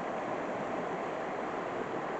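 A river running fast, its water rushing steadily through a rocky channel, swollen after snow and rain.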